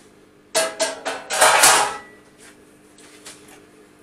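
Metal kitchenware clattering: a few sharp clanks between about half a second and two seconds in, the last and loudest with a short ringing tone, then a few faint clicks.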